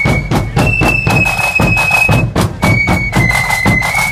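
Marching flute band playing: flutes carry a single high melody in long held notes, stepping up to a higher note about half a second in and back down near the end, over bass drums and other drums beating a steady, dense rhythm.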